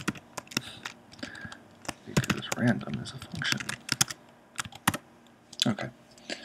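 Typing on a computer keyboard: irregular runs of key clicks, with a few quiet mumbled words in the middle.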